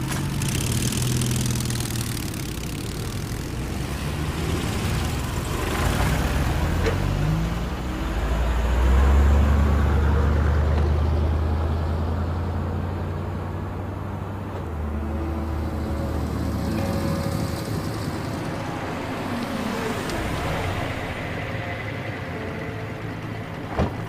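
Motor vehicle engines running at low revs, a steady low hum that swells louder about eight seconds in and then eases back.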